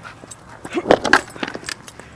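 Skateboard clattering on asphalt as the rider steps off: a quick cluster of sharp clacks and knocks, loudest about a second in.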